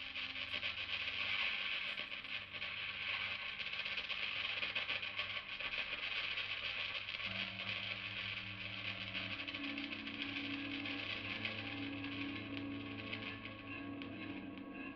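Electric archtop guitar played through effects pedals and an amplifier: a dense, grainy high texture over sustained low notes, the low notes shifting to a new pitch about seven seconds in.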